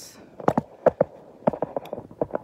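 Handling noise as a camera is picked up and moved to look down at the counter: a quick run of sharp knocks and clicks, about eight in a second and a half.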